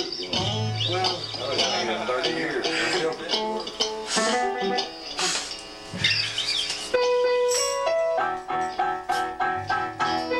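Voices and loose guitar playing, then about seven seconds in a harmonica holds a note and piano and hollow-body electric guitar start a song with a steady, even beat.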